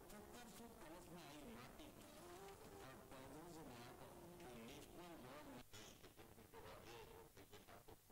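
Near silence: faint background with a low, wavering pitched murmur.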